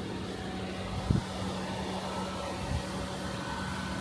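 A steady low mechanical hum over background noise, with a sharp thump about a second in and a smaller one near three seconds.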